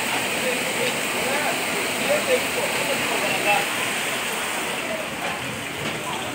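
Muddy floodwater rushing across the ground in a steady, unbroken wash of noise, with faint voices mixed in.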